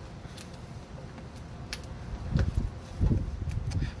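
A small cardboard box being handled and opened by hand: a few faint clicks and scrapes, with two dull low bumps a little past halfway and about three-quarters through.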